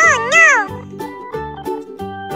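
A short, loud sound effect whose pitch dips and rises twice within under a second, over cheerful children's background music that carries on steadily.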